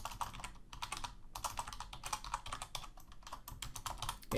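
Rapid typing on a computer keyboard: a quick run of keystrokes with a short pause about a second in.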